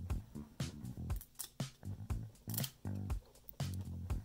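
Background music with steady low notes, over a few short, sharp clicks of trading cards being handled and pulled apart.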